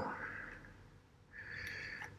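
Soft breathing in a pause between spoken phrases: a faint breath fading out at the start, then another breath drawn in over the second half.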